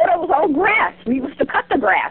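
Indistinct, high, strongly rising-and-falling voice sounds coming over a telephone line, with a steady low hum under them.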